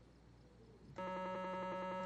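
Electronic Simon memory-game toy sounding one steady, buzzy beep, starting abruptly about a second in and cutting off about a second later, as its reply to the question just put to it.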